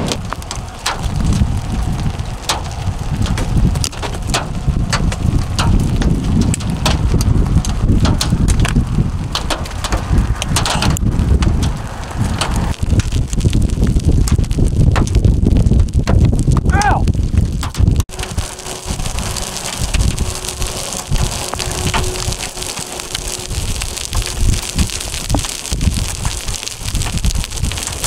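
Gusty wind buffeting the microphone in heavy, uneven rumbles. About eighteen seconds in the sound breaks off abruptly and a brighter, hissing wind takes over.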